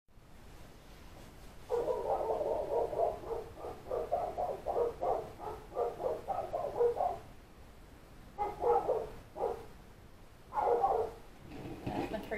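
Big dogs barking outside the house, heard from indoors: a fast run of barks for about five seconds, then two short bursts of barking near the end.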